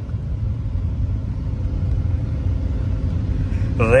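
Lamborghini Huracán's V10 engine running at low speed, a steady low rumble heard from inside the cabin.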